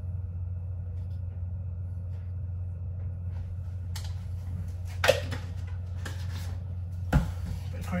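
Plastic supplement tubs being handled on a kitchen worktop: rustling, and two sharp knocks about five and seven seconds in as tubs are set down and picked up, over a steady low hum.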